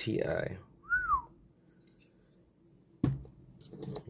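One short whistled note about a second in, rising and then falling in pitch. A single sharp click follows about three seconds in.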